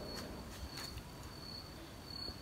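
A faint, steady, high-pitched insect trill over low background noise.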